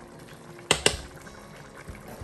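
Two sharp clicks in quick succession just under a second in: a metal spoon knocking on a glass spice jar. Behind them is a faint steady background hiss.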